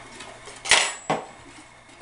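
Kitchenware clatter: a sharp metallic clink with a brief high ring about two-thirds of a second in, followed by a smaller knock.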